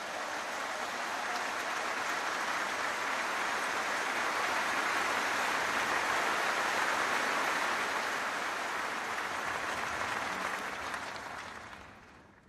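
A large audience applauding. The clapping swells in, holds steady, and dies away near the end.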